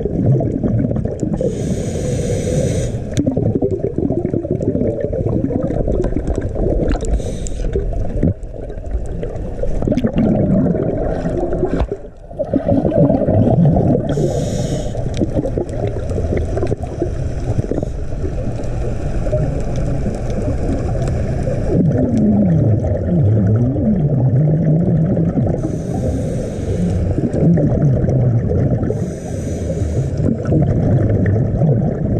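Underwater sound of scuba diving heard through a camera's waterproof housing. A steady low rumble of water and regulator exhaust bubbles runs throughout, with a brief hiss every several seconds from breathing through the regulator.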